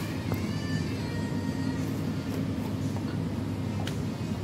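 Steady low hum of a supermarket's background noise with faint in-store music over it, and a short click near the end as a cardboard jelly box is handled.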